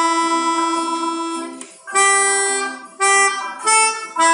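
Melodica played through its mouthpiece tube, a single-line melody: one long held note that fades away, a short break just before two seconds in, then a few shorter notes.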